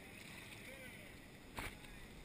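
Steady background rush of whitewater river, with a faint distant voice briefly before halfway and a single sharp knock near the end.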